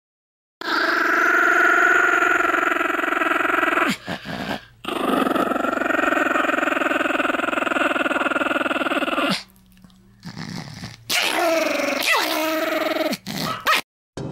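A Pomeranian growling: two long, drawn-out growls of several seconds each, then a run of shorter growls that rise and fall in pitch.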